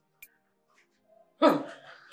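A single loud dog bark about one and a half seconds in: sudden, falling in pitch, then fading.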